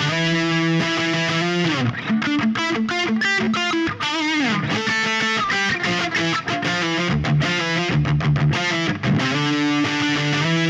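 Jackson electric guitar tuned to D standard, played through heavy distortion: held octave shapes that slide between positions, then quick single-note runs around a repeated pedal note with a vibrato about four seconds in, and held notes again near the end.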